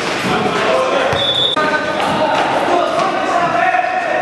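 Indoor mini-football match in a gym hall: the ball bouncing and being kicked, with players calling out, all echoing in the large room.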